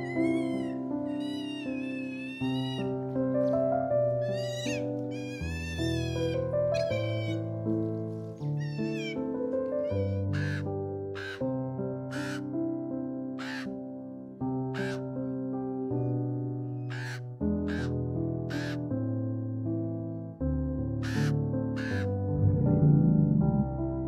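A common raven calling, about a dozen short harsh croaks roughly once a second over the second half, after a run of high, wavering squeaking calls from an otter in the first half. Soft piano music plays underneath throughout.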